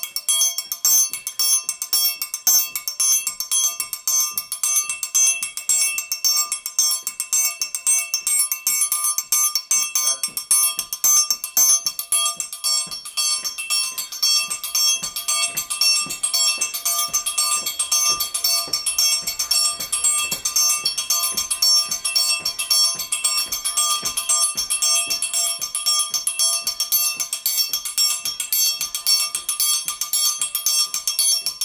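Metal percussion played in a fast, unbroken stream of strikes with thin metal beaters, its high bell-like tones ringing on under the hits.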